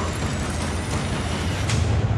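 Cinematic trailer sound design: a loud hissing noise swell over a steady low bass drone, with a thin high tone rising slowly until it cuts off near the end.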